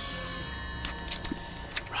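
A bright bell-like chime struck once, its ringing tones fading slowly, with a few faint clicks as it dies away.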